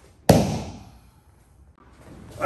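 A single sharp slap on the dojo mat during an aikido pin, a short way in, with a brief echo off the room.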